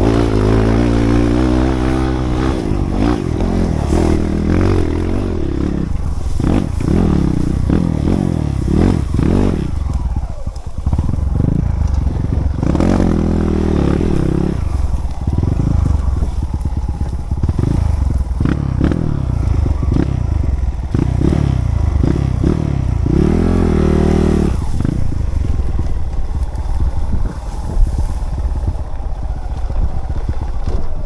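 Dirt bike engine revving up and down repeatedly as it climbs and rides a grassy trail under load.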